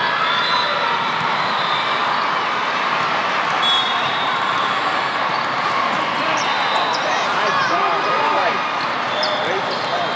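Volleyball rally: the ball being struck and players' shoes squeaking on the sport-court floor, with a run of squeaks about seven to nine seconds in. Over it runs the steady chatter of many voices in a crowded hall.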